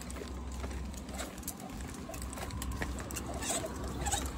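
Plastic push-along toddler tricycle rolling on a concrete footpath, its wheels and frame giving off a scatter of light clicks and rattles, over a steady low rumble of wind on the microphone.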